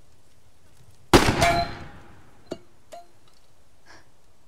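A single revolver shot about a second in, with a ringing tail, followed by two short metallic clinks.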